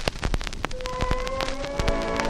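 Surface noise of an acoustically recorded 1915 78rpm shellac record: dense crackle and clicks over a steady hiss. About two-thirds of a second in, the musical introduction begins with a held note, and more notes join it about a second later.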